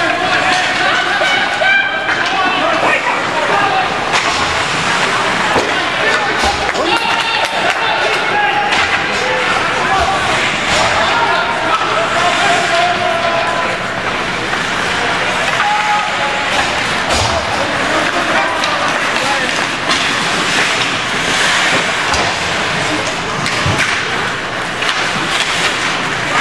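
Spectators at an ice hockey game talking and calling out over one another, with scattered clacks and thuds of sticks and puck on the ice and boards.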